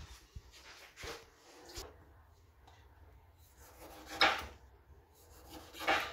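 A few short, faint rubbing and knocking sounds of objects being handled, the loudest about four seconds in, over a low steady hum.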